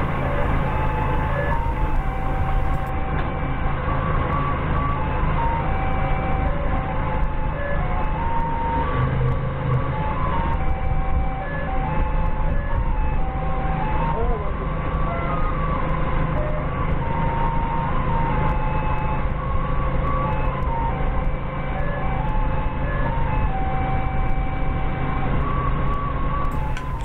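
Forklift engine running steadily while it carries a load on its forks. Over it plays a simple melody of short held electronic notes that step up and down, the kind of tune a forklift's travel or reverse warning plays.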